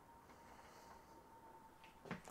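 Near silence: room tone with a faint, steady high tone.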